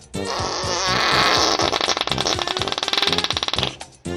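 Intro music with a steady beat, with a loud raspy buzzing sound laid over it for about three and a half seconds, starting just after the beginning and cutting off shortly before the end.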